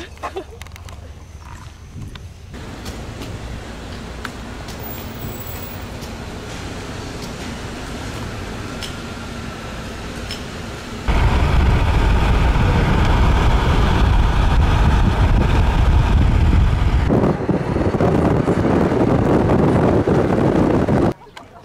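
A steady hum while a car is filled at a gas pump. About eleven seconds in, this gives way to the much louder, steady rumble of road and wind noise inside a moving car.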